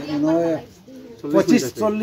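A man speaking, with a short pause partway through.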